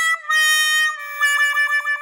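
Short instrumental outro jingle: a single high melody line of held notes that steps down in pitch twice, then a run of about five quick little dips in pitch in the second half.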